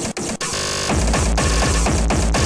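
Speedcore electronic track: harsh, distorted noise, with a brief break and two quick cutouts near the start, then the fast pounding distorted kick-drum beat comes back about a second in.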